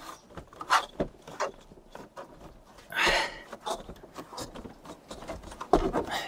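Plastic inner frame of a Dometic Mini Heki roof window being pressed into its mounting hooks. There are several light clicks and knocks, and about halfway through a short scraping rustle.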